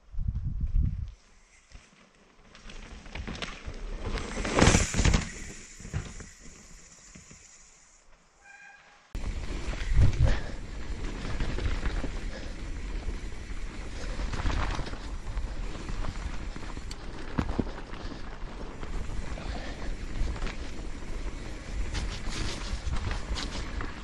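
Mountain bike rolling down a dirt trail: a steady rumble of tyres on dirt with rattling and knocks from the bike over bumps, and wind on the microphone. The first several seconds are quieter, with one loud rush about five seconds in, before the steady riding noise sets in about nine seconds in.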